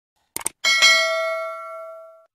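A quick double mouse click, then a bright bell ding with several ringing tones that fades away over about a second and a half. This is the click-and-notification-bell sound effect of a subscribe animation.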